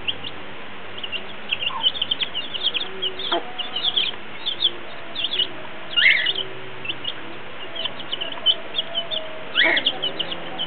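Baby chicks peeping rapidly and without pause, in high, short cheeps, while they feed. Under them the mother hen clucks softly and low, and there are two louder calls, about six seconds in and near the end.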